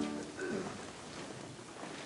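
A held electric keyboard chord cuts off right at the start, leaving faint room noise with a few small, brief sounds.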